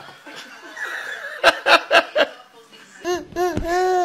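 Hearty laughter in four quick bursts. About three seconds in, a toddler's high-pitched, drawn-out vocalising follows.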